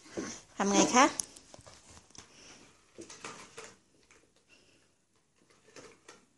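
A young girl's voice: a short utterance about a second in and a fainter one about three seconds in, with faint scattered noise between them.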